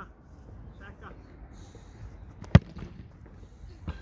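A football kicked hard once close by, a single sharp thud about two and a half seconds in, followed by a fainter knock just before the end as the shot reaches the diving goalkeeper.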